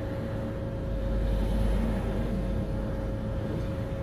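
Idling engine hum and low rumble heard from inside a stationary lorry cab, with a passing vehicle swelling louder between about one and two and a half seconds in.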